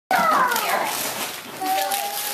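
Wrapping paper and tissue paper rustling and crackling as a gift box is unwrapped. Over it, a high-pitched vocal call slides down in pitch in the first second, and a high voice is held near the end.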